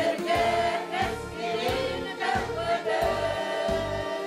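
Women's choir singing a held, flowing melody together over instrumental accompaniment with a regular bass beat.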